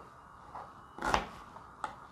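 A kitchen knife cutting through a white onion onto a cutting board, one cut about a second in, then a sharp tap on the board near the end as the knife is set down.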